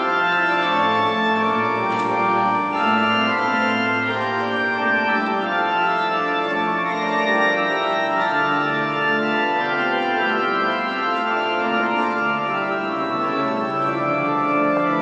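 Organ music: slow, held chords that shift from one to the next every second or two.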